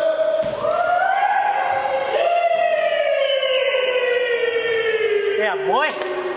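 A single long held voice-like note, sliding slowly down in pitch and breaking into a fast wobble near the end.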